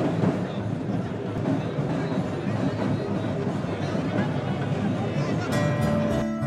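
Dense crowd din of many voices from a pressing throng. Near the end, music with sharp, strummed notes starts up.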